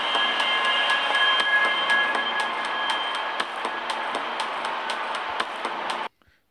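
Background soundtrack of a news video playing: a steady noisy hiss with a few high sustained tones that fade out midway, and a regular ticking at about three ticks a second. It cuts off suddenly at the end.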